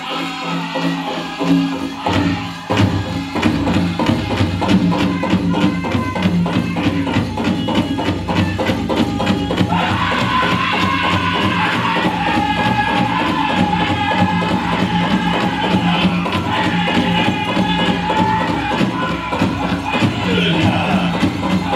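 Powwow drum group singing a chicken dance song: a steady, even drumbeat under men's voices singing together. About halfway through, a high sung line comes in over the group.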